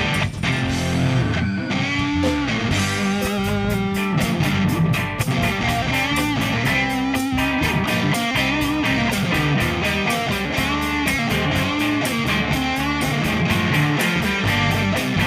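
Live rock band playing: electric guitars and bass guitar over a drum kit keeping a steady beat.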